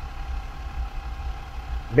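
Steady low rumble inside a car's cabin from the car's engine running, with a faint even hum above it.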